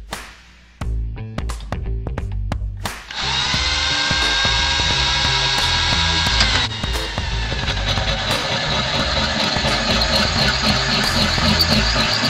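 Cordless drill spinning a 1¼-inch diamond core bit into a stone countertop. A loud, steady, high grinding whine starts about three seconds in and turns rougher about halfway through. Background music with a beat plays throughout.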